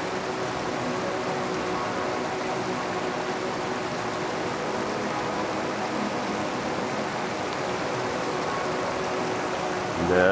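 Steady rush of creek water pouring over the edge of a concrete slab bridge.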